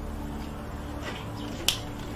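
A single sharp click about three-quarters of the way through, over a steady low electrical or room hum.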